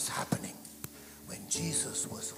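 A man's hushed, whispered speech into a microphone in short bursts, with soft sustained background music held underneath.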